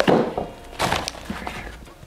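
Small cardboard box being opened by hand and a wrapped part pulled out of it: cardboard scraping and rustling, loudest right at the start and again about a second in.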